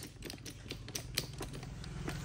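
4-ton hydraulic bottle jack being pumped by its handle to raise the ram to full height: a run of light clicks and taps, several a second, with one sharper click just past a second in.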